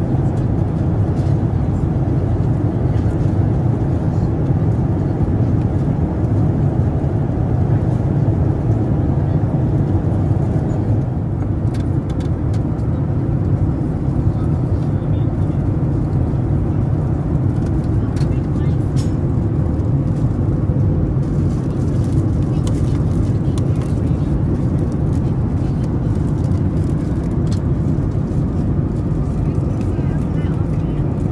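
Steady, loud low rumble of a Boeing 787-10's cabin noise at cruise altitude, the constant roar of airflow and engines heard from an economy seat. A few faint clicks sit over it.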